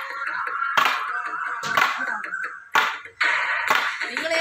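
Long bamboo sticks knocking on a road surface in time, a sharp knock about once a second, five in all, over music.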